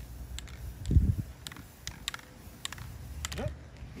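Aerosol spray-paint can sputtering with its nozzle held half down, spitting drops of paint for a spatter effect: irregular sharp clicks, about three or four a second.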